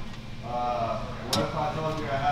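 Low, indistinct male voice talking, with one sharp click a little past halfway through.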